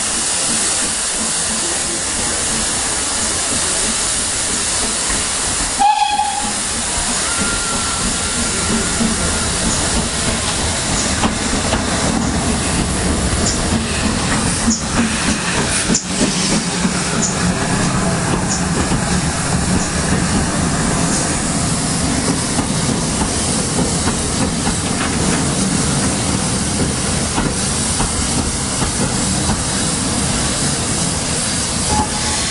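Steady running noise of a heritage steam train heard from a carriage window, with rail clatter and hiss, and a short whistle about six seconds in. From about eleven seconds a steam locomotive and its coaches pass close alongside the other way, bringing a louder rumble and a run of clicks from the wheels over the rail joints.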